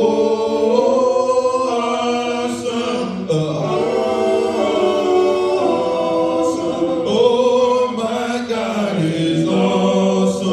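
Church singing a cappella: several voices in harmony, unaccompanied, holding long notes that move slowly from one chord to the next.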